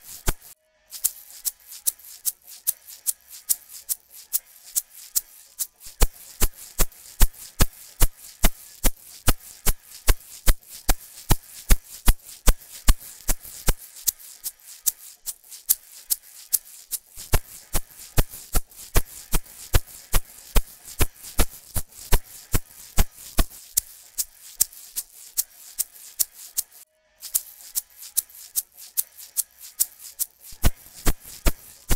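Recorded egg shaker track playing a steady rhythm of crisp shakes, several a second. It is heard alternately bypassed and processed by the Crane Song Peacock vinyl-emulation plugin, with harmonic and dynamic at maximum, as its colour is stepped through Rich, Fat and Deep. Playback cuts out briefly near the start and again near the end.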